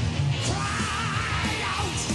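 Heavy metal band playing live: distorted electric guitar, bass and drums, with a male singer holding a belted note with vibrato from about half a second in to near the end.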